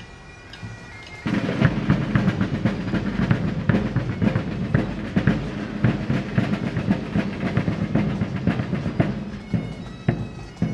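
Pipe band playing: bagpipes with steady drones over beating drums, growing much louder about a second in.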